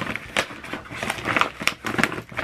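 White paper mailing envelope crinkling and rustling as it is handled and opened to pull a book out: a quick, irregular run of crackles.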